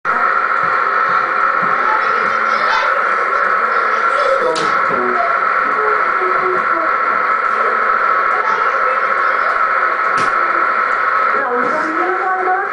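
Faint, indistinct voices talking over a loud, steady high whine and hiss, with a couple of sharp clicks.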